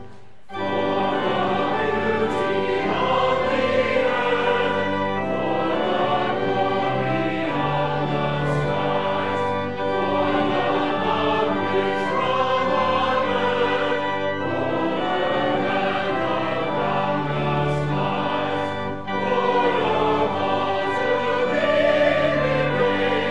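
Church choir singing a hymn with organ and violin accompaniment. The music breaks off for about half a second at the start, then the singing comes back in and carries on.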